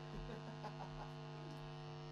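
Steady electrical mains hum from a guitar amplifier rig, with a few faint short chirps in the first second.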